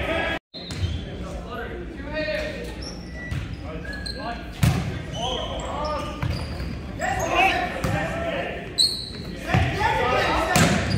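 Volleyball rally in a gymnasium: several sharp slaps of hands striking the ball, the loudest about halfway through, among players' shouted calls, all echoing in the hall. The sound cuts out briefly about half a second in.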